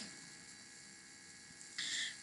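Quiet room tone with a faint steady electrical hum. Near the end comes a short, soft hiss lasting about a third of a second.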